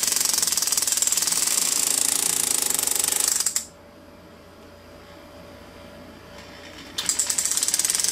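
Flex-shaft hammer handpiece running at a held-back speed, its tip rapping very fast against the ring's metal to tighten the channel-set diamonds. It stops about three and a half seconds in and starts again about a second before the end.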